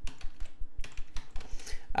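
Computer keyboard typing: a quick run of keystrokes, several per second, as a word is typed out.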